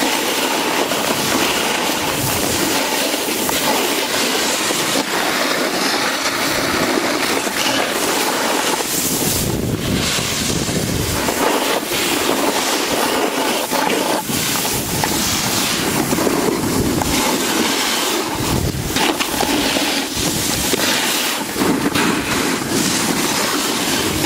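Snowboard riding downhill: the steady scrape and rumble of a board's base and edges over hard-packed snow, mixed with wind rushing over the microphone, which gusts into low rumbles now and then.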